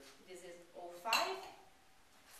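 Glass clinking as wine bottles and glasses are handled on a tasting table, with a sharper clink about a second in, under low voices.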